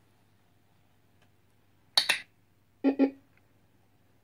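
Smart dog-training clickers sounding: a sharp, bright click about halfway through, then a closely spaced pair of lower, fuller clicks nearly a second later, over a faint steady hum.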